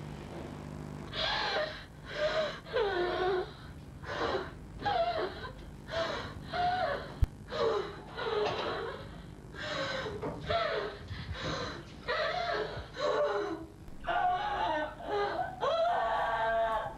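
A woman sobbing and wailing in gasping bursts, about one a second, starting about a second in. A single sharp click is heard about seven seconds in.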